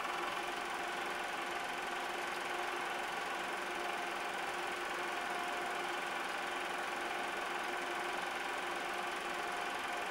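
Super 8 film projector running: a steady mechanical whir with a few held tones, unchanged throughout.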